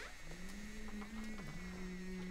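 A low voice humming a slow, held note that dips briefly and returns about a second and a half in, with a faint wavering high tone above it.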